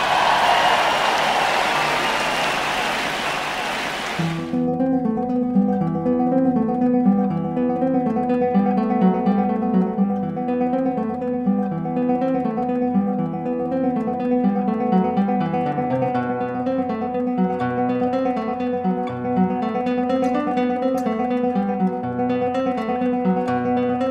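A large crowd cheering and applauding, fading over about four seconds and then cut off sharply. Solo classical guitar takes over: a continuous run of fingerpicked notes, with repeated high notes ringing over a moving bass line.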